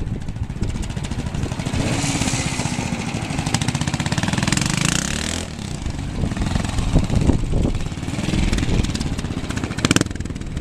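Vintage trials motorcycle engine pulsing at low speed as the bike is ridden through the section, opened up more between about two and five seconds in, then easing back after a sudden drop.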